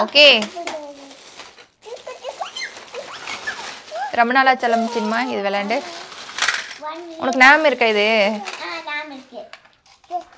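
A young child talking in a high voice, with the rustle of a plastic bag and the light clatter of plastic toy train track pieces being tipped out and handled.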